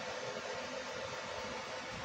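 Steady background hiss of room tone, with no distinct sounds standing out.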